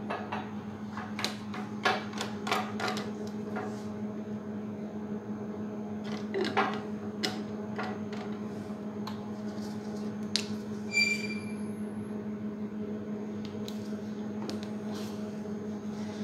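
Scattered small clicks and knocks of plastic reagent bottles, caps and microcentrifuge tubes being handled on a lab bench, with a brief high squeak a little past the middle, over a steady low hum.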